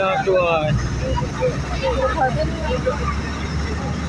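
Steady low rumble of a road vehicle's engine and tyres, heard on board while it drives along.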